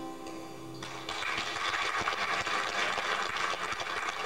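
The song's last sustained notes die away, and about a second in an audience breaks into steady applause.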